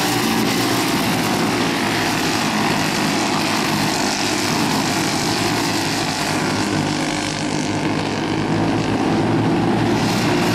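Several Briggs & Stratton flathead racing kart engines running at speed on track, blending into one steady drone that dips slightly and comes back near the end.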